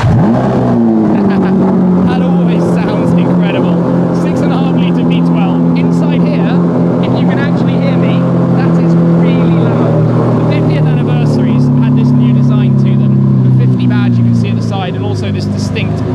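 Lamborghini Aventador LP720-4 50th Anniversary's V12 starting up: the revs flare as it fires, then fall back over a couple of seconds into a steady, loud idle. The engine note shifts a little near the end.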